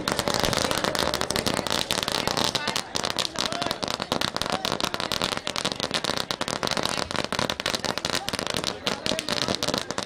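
A string of firecrackers going off in dense, rapid, continuous crackling pops that run on without a break.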